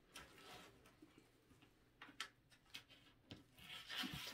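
Near silence, with a few faint clicks and rustles from hands handling artificial floral stems on a willow wreath form.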